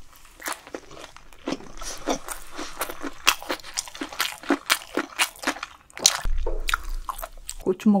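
Close-miked chewing of a spoonful of food: wet mouth sounds with many sharp, irregular clicks as the mouthful is worked.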